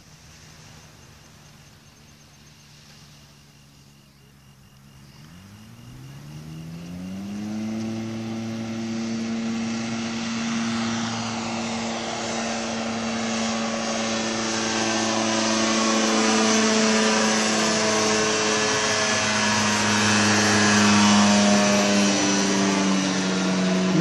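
Ultralight trike's engine and propeller running: faint and steady at first, then rising in pitch about five seconds in as it goes to higher power. It grows steadily louder as the aircraft flies in low and passes overhead, the pitch dropping slightly near the end.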